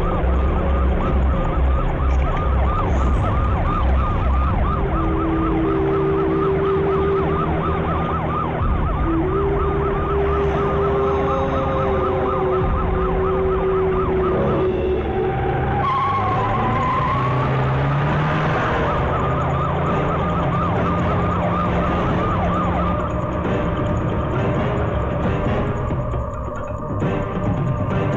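Tense action background score: a rapid siren-like warbling figure repeats several times a second over long held notes and a pulsing low beat. The warble breaks off about fifteen seconds in, and gliding notes follow.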